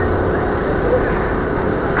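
Steady outdoor city background noise on a busy square: a rumble of traffic with people's voices in the distance.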